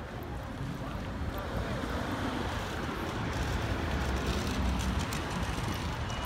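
Busy city street ambience: a low, uneven rumble of traffic and wind buffeting the microphone, with the voices of passing pedestrians underneath.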